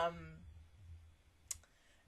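The tail of a spoken 'um', then a single short, sharp click about one and a half seconds in.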